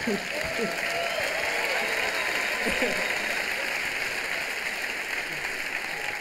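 A live comedy audience applauding, with a few voices laughing and whooping over the clapping in the first couple of seconds.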